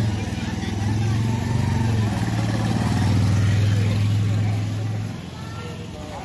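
A motorcycle engine running close by at a steady pitch, stopping abruptly about five seconds in.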